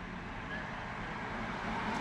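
Steady low rumble and faint hum of a car's interior with the engine running.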